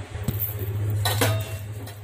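Two clinks of steel kitchen utensils, about a quarter second and a second and a quarter in, over a steady low hum.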